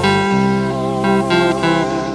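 A small live band playing a hymn on electric guitar, electric bass and keyboards, with held notes that waver in pitch over a steady bass line.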